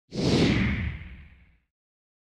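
Whoosh sound effect for an animated logo reveal: one loud swoosh with a deep rumble under a falling hiss, fading out after about a second and a half.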